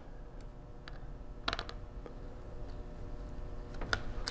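A few light clicks and taps from hands handling the parts of an open laptop, the clearest about one and a half seconds in, over a faint steady hum.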